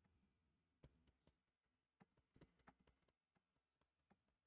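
Faint computer keyboard keystrokes, about ten scattered clicks through the first three seconds, over near silence.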